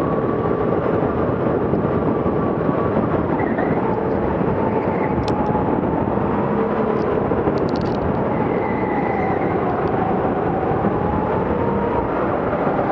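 Go-kart engine running, heard from on board the moving kart, over a steady loud rushing noise; its pitch slowly dips and rises as the kart slows and speeds up through the corners.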